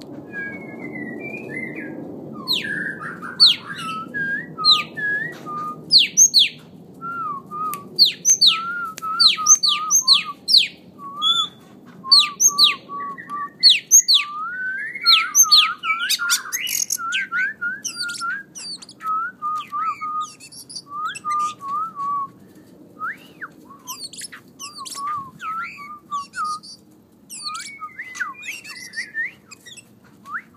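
Caged songbirds singing: quick runs of sharp, high chips mixed with short warbling whistles, kept up throughout.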